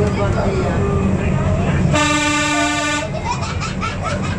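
Horn of a Monte Generoso rack-railway car, heard from inside the passenger car: one steady-pitched blast of about a second, midway through, over the continuous low rumble of the car running on the track.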